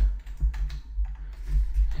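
Computer keyboard keystrokes: a few irregular key taps as text is typed, over a steady low hum.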